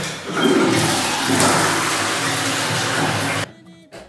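Toilet flushing: a loud rush of water that cuts off suddenly about three and a half seconds in.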